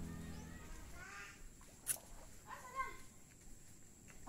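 The last chord of a song fades out in the first half-second. After that the sound is faint and outdoor: a few short pitched calls and one sharp click a little before two seconds in.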